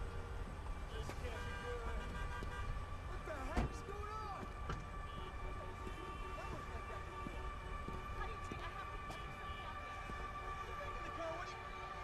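Traffic din: a low, steady rumble with long held tones from car horns and wavering, siren-like glides, and one sharp thump about three and a half seconds in.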